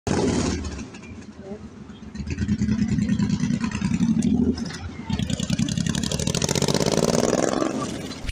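Street traffic, with a car driving past close by, its engine running louder through the second half.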